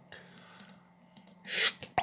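A few light clicks of a computer mouse, spread over the second half, with a short hiss about one and a half seconds in.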